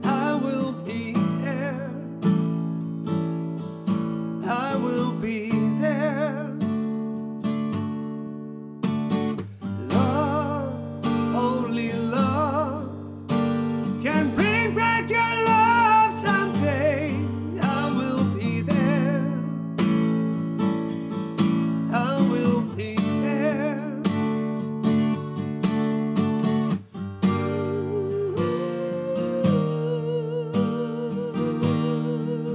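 Acoustic guitar strummed in steady chords with a man singing a slow ballad over it, his held notes wavering with vibrato.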